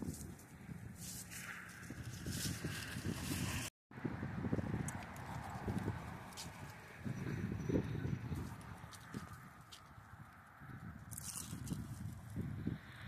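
Wind buffeting a phone microphone in irregular gusts, with scattered footsteps on concrete steps. The sound cuts out completely for a moment a little under four seconds in.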